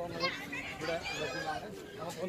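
Voices of children playing and people chatting in the background, with high-pitched children's calls in the first half and again a little after the middle.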